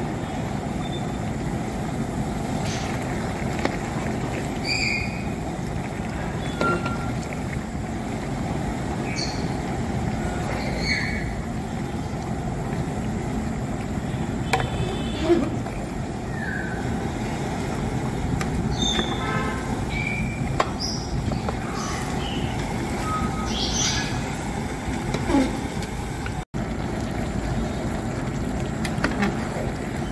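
A steady low outdoor rumble with scattered short bird chirps, and a few clanks of a metal ladle against a large aluminium cooking pot as a big batch of chicken kurma is stirred.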